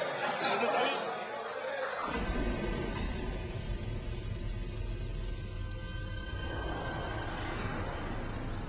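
Men's voices chattering and chuckling for about two seconds, then a steady wash of noise from showers running in a communal shower room.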